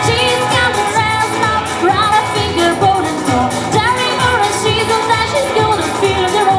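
Live country band playing a song: sung vocals over electric guitar, with a steady beat.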